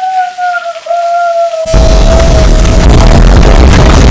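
Gushing-water sound effect: a hiss of rushing water under one long held note that slides slowly down, then, about two seconds in, an extremely loud, distorted blast of water noise that cuts off abruptly at the end.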